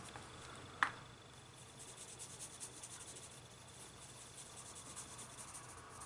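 Faint, rapid fine scratching of a coloured pencil shading on paper, with one short click about a second in.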